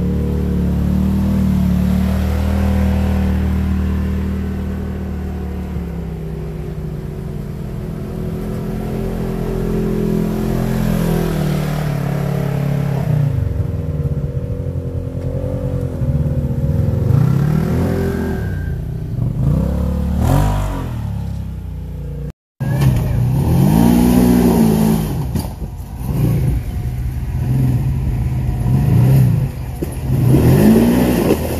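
Side-by-side UTV engines running at low revs on a trail, steady at first, then repeated throttle blips that rise and fall in pitch through the second half. The sound drops out for a moment about two-thirds of the way through, then the revving goes on.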